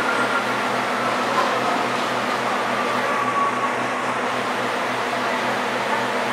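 Diesel locomotive running and moving slowly, its engine giving a steady low throb of about four beats a second, with a faint high whine that drifts slightly lower over the first few seconds.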